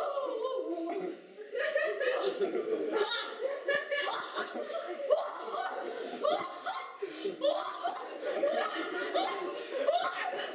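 Audience laughing and chuckling, on and off.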